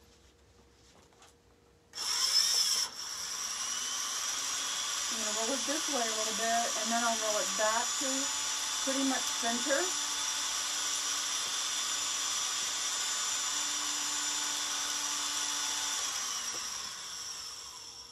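A small electric motor whining, starting suddenly about two seconds in, running steadily, then fading away near the end.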